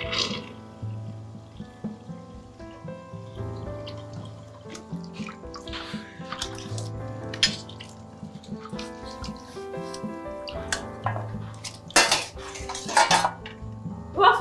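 Dishes being washed by hand at a kitchen sink: water splashing and plates clinking under background music, with a louder stretch of splashing near the end.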